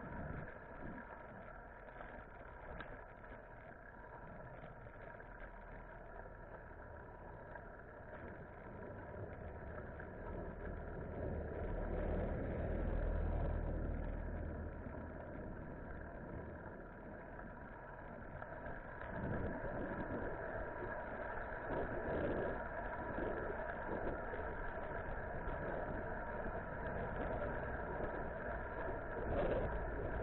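Road and wind noise picked up by a camera on a moving folding bike, with motor-vehicle rumble from traffic. A low rumble swells in the middle and the sound grows louder again in the second half.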